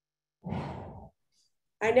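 A woman's short, breathy sigh, lasting just over half a second, starting about half a second in.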